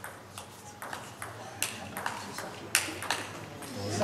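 Table tennis rally: the ball clicking sharply off the bats and the table, roughly two to three hits a second, with some echo from the hall. Crowd noise starts to rise right at the end.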